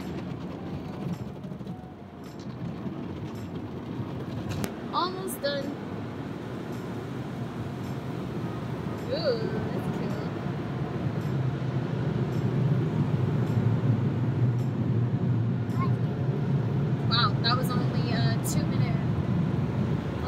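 Automatic car wash heard from inside the car: a steady rush of water spraying over the windshield and body, growing louder and deeper through the second half.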